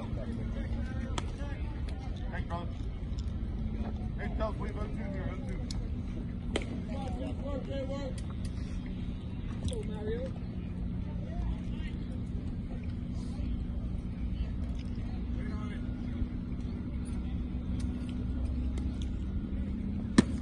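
Ballfield ambience: faint, distant voices of players and spectators over a steady low hum, with a few light clicks.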